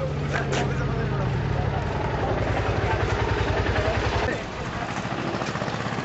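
A motor vehicle engine running with a low, rapid throb, which drops noticeably in level about four seconds in. Voices are heard over it.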